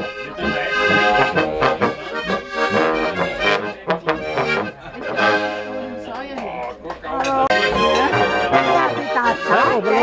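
Accordion and trumpet playing a traditional folk tune live.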